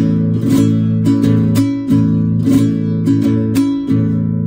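Nylon-string classical guitar strummed in a zamba rhythm, the strokes played with the open hand rather than the thumb: a steady, repeating pattern of about seven strums over one held chord.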